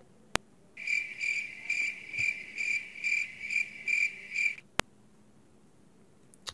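Cricket chirping: a high steady trill pulsing about twice a second, starting about a second in and stopping abruptly well before the end. A single sharp click comes just before it and another just after it.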